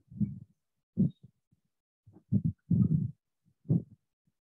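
A string of short, low, muffled thuds picked up by an open microphone on a video call, about five of them at uneven intervals, with the loudest near the start and about a second in.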